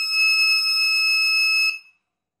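Electronic buzzer of an Arduino keypad door lock giving one long, steady high-pitched beep that signals the door unlocking after a correct PIN; it cuts off about 1.7 seconds in as the lock resets to locked.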